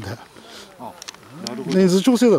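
People shouting in drawn-out calls: one trails off at the start, and another rises into a loud, long held shout near the end.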